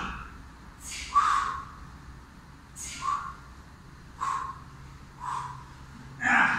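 A man breathing out hard with each press-up, four short, sharp breaths about a second apart.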